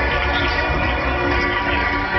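Loud funfair ride sound: music from the ride's sound system mixed with the ride's machinery, with steady held tones running through.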